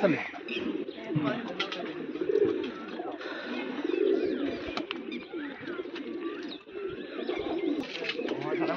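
Domestic pigeons cooing in a loft: a run of low, rising-and-falling coos, roughly one a second.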